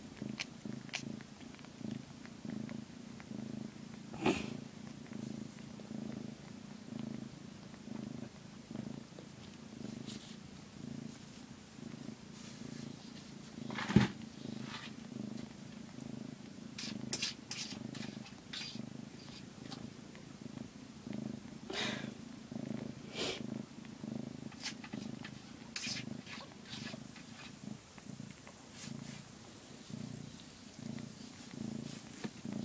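Calico mother cat purring steadily while in labour with her litter. Scattered soft clicks and rustles sound over the purr, with one sharper knock about halfway through.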